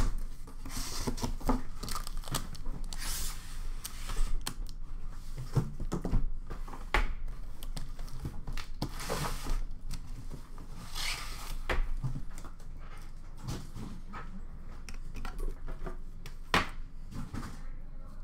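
A cardboard shipping case opened by hand: tape and flaps tearing and the cardboard rustling and scraping, with scattered sharp knocks as the metal card tins inside are handled and set down. The sharpest knock comes right at the start.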